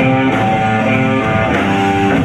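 Live electric blues-rock band playing an instrumental passage: electric guitar and bass guitar over drums, with held, sustained guitar notes changing every fraction of a second and no vocals.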